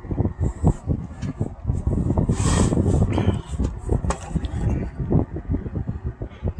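Box fan running, its airflow buffeting the microphone with an uneven, fluttering low rumble.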